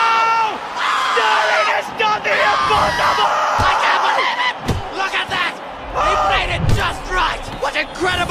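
Crowd cheering and yelling, with excited shouting voices, and a couple of low thumps in the second half.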